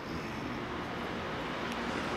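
Steady noise of vehicle traffic in the street, slowly growing louder.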